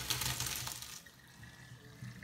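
Hot pasta and its cooking water poured from a stainless steel pot into a plastic colander in the sink, the water splashing and draining through the holes. The pour tails off about a second in.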